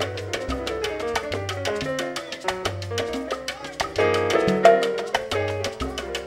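Live salsa band playing: piano taking a solo over upright bass and steady Latin percussion, with a fuller, louder passage about four seconds in.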